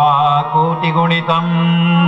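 A voice chanting a Sanskrit verse (shloka) over background music with a steady held drone. The chanted phrases come at the start and again around the middle, while the drone carries on underneath.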